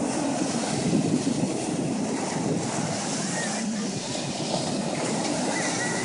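Ocean surf breaking and washing over the shallows in a steady, even rush, with wind buffeting the microphone.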